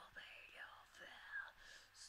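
A faint whispered voice, barely above silence, between sung lines.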